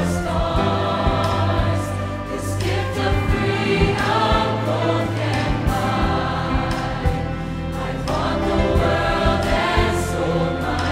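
Mixed choir singing over a string orchestra in a contemporary worship arrangement, the full ensemble sustaining a steady, full sound.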